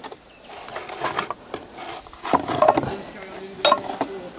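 Quiet, indistinct speech, with a faint high steady whine that comes in with a short rise about halfway through, and a single sharp click near the end.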